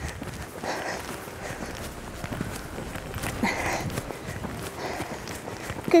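A grey pony's hooves trotting on a sand arena: a continuing run of soft, muffled hoofbeats.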